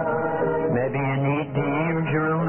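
Choir singing a slow hymn in long held notes that move from pitch to pitch.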